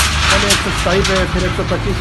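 Voices talking over a steady low rumble of road traffic.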